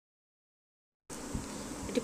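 Dead silence for about the first second, then a steady buzzing hum comes in, with a low knock or two just after it starts.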